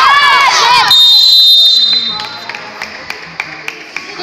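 Excited high-pitched shouts from several young voices. About a second in, a whistle blows once, a steady shrill blast about a second long. It is followed by faint knocks of play on the concrete court.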